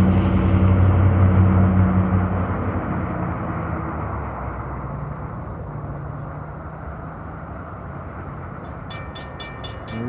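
A low engine rumble fades away over the first few seconds, leaving a quieter steady background. Near the end a railroad crossing bell starts ringing in rapid, evenly spaced strikes as the crossing's warning devices activate for an approaching train.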